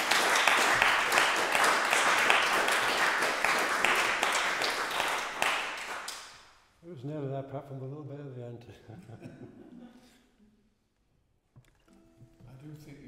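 Audience applauding, dying away about six seconds in, followed by a few words from a man's voice.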